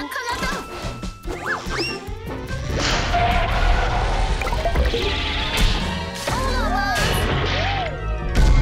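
Cartoon crash and clatter effects over background music, with a dense stretch of crashing in the middle and several arching, swooping pitch glides near the end.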